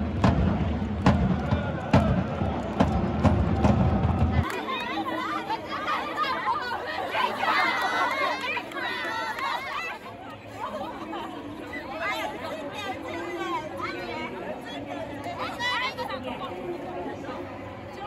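Supporters' drum beating about once a second under crowd noise in the stands, then, after a sudden cut about four seconds in, many voices chattering together as a team group gathers close by.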